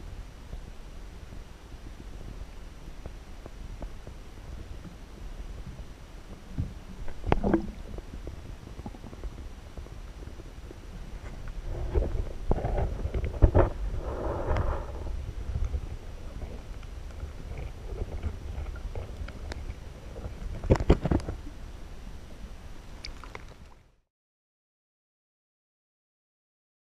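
Muffled low rumble and gurgle of water heard through a submerged action camera's waterproof housing, with a few knocks at about seven, thirteen to fifteen and twenty-one seconds in. The sound cuts off shortly before the end.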